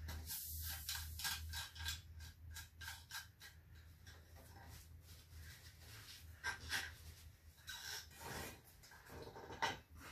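Faint clicks and rubbing of hands working a vintage Sears pressurized white-gas lantern's metal fount and valve, with a steady low hum underneath.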